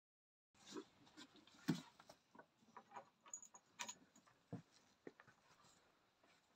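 Faint, scattered knocks and rustles of a newborn calf's hooves scrabbling on a straw-strewn dirt floor as it struggles to its feet, the loudest knock just under two seconds in.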